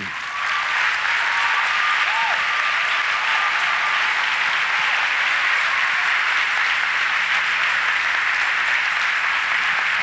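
Large audience applauding steadily, a dense even clapping that starts right away and holds without letting up.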